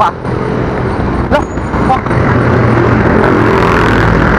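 Road traffic heard from a moving bicycle: a truck's engine running close by, a steady hum that grows louder and holds about halfway through.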